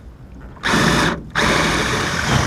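Makita 18V cordless drill boring into a soft aluminium steering-wheel hub. Two loud runs of the drill, the first starting about half a second in, with a brief pause between.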